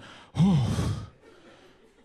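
A man's breathy, exaggerated "ooh" exclamation, its pitch rising then falling, starting about half a second in and lasting well under a second.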